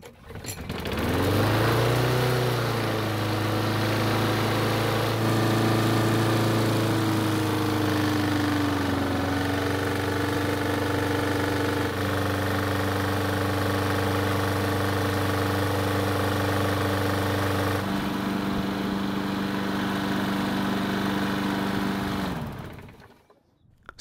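Yard Machines push mower's small single-cylinder engine starting, catching about a second in and settling into a steady fast run. Its speed drops slightly partway through as the governor spring anchor is adjusted to bring down an engine that was running too fast. It stops shortly before the end.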